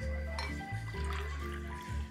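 Water poured from a glass bottle into a drinking glass, under louder background music.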